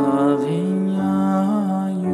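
A chanted mantra: one voice comes in about half a second in and holds a long note, lifting briefly in pitch near the end, over a soft sustained keyboard accompaniment.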